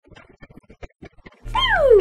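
A woman's high squeal or drawn-out 'ooh' sliding steadily down in pitch, starting suddenly about one and a half seconds in over a low steady hum.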